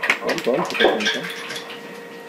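A man's voice briefly, with a few light clicks as a stone is handled and dropped down a spring shaft.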